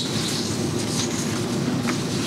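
Steady low rumble and hiss of room noise in a large meeting hall, with no distinct events.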